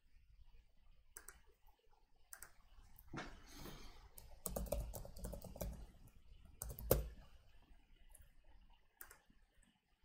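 Faint computer keyboard typing and mouse clicks: irregular keystrokes, busiest in the middle, with the sharpest click about seven seconds in.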